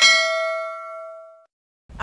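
A single bright bell ding, the notification-bell sound effect of a subscribe animation, ringing with several overtones and fading away over about a second and a half.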